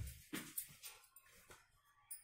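Wooden rolling pin knocking and rolling over folded paratha dough on a stone rolling board: a loud knock at the start, then a few softer knocks that fade.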